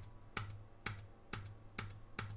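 Computer keyboard keystrokes: about five sharp, evenly spaced clicks, roughly two a second, as a key is pressed over and over to step a debugger backward one instruction at a time.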